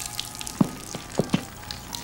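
A thin stream of urine falling into a fountain's pool of water: a steady hissing spatter with a few louder splashes.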